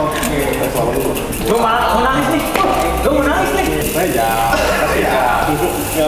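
Indistinct voices talking over steady background music.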